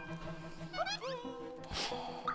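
Background music with sustained, steady tones, and a short upward-swooping sound effect a little before the middle.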